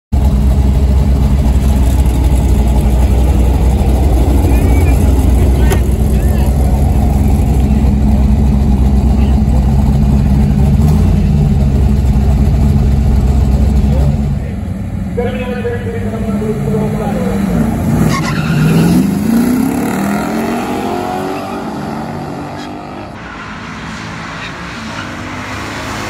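Camaro ZL-1 tribute's 427 big-block V8 idling steadily, heard close at the tailpipes. About halfway through the sound drops and changes to the car running down a drag strip, the engine's pitch falling and then climbing again under acceleration.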